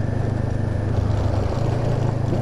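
2013 Honda CB500X's parallel-twin engine running steadily under way through a Staintune exhaust, with a fast, even low beat.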